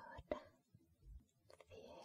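A woman whispering softly close to the microphone: a short whispered phrase with a small mouth click at the start, a quiet pause, then more whispering near the end.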